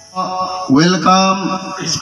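A man speaking into a microphone over a public-address system in a drawn-out, sing-song announcing voice. He starts a moment in, after a brief lull.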